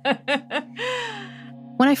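A woman laughing in short breathy bursts that trail off into a breathy exhale falling in pitch. A low, steady music bed of held notes sounds underneath.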